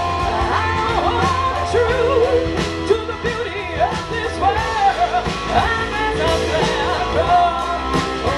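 Live rock band playing electric guitars and drums over a steady low bass, with a lead melody that bends and wavers up and down in pitch.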